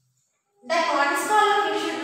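Silence for the first half second or so, then a woman's voice speaking slowly, with long drawn-out syllables.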